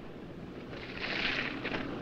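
Quiet soundtrack: a soft hiss of noise swells for about a second in the middle, over a faint low background rumble.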